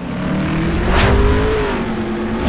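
Outro sound effect that starts abruptly: a deep rushing rumble under a held tone that bends gently, with a sharp whoosh about a second in.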